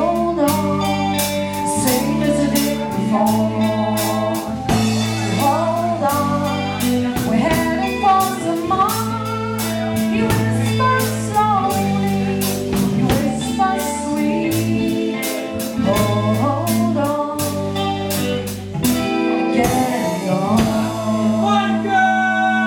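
Live band performing a song: a woman sings lead over electric keyboard, bass, guitar and a drum kit keeping a steady beat.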